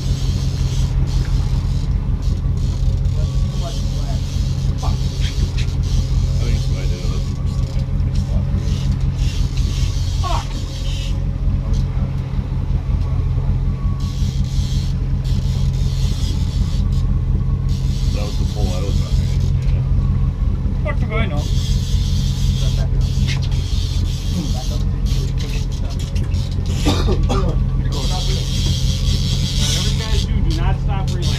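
Charter fishing boat's engine running steadily at trolling speed, a low, even drone.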